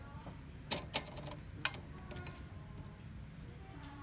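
Three sharp plastic clicks as parts inside an opened HP Smart Tank 515 inkjet printer are handled. Two come close together under a second in, and a third follows about a second later.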